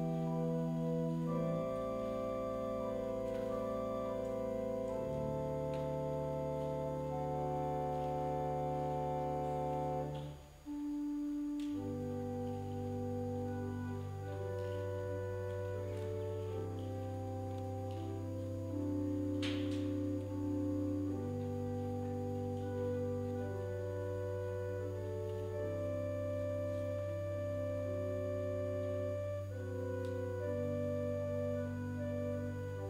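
Church organ playing a slow prelude in long held chords that change every second or two, with a brief pause about ten and a half seconds in.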